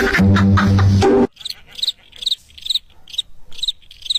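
Loud music with a heavy bass beat, cut off abruptly about a second in. Then cricket chirping, short high chirps about three a second, used as the usual awkward-silence sound effect.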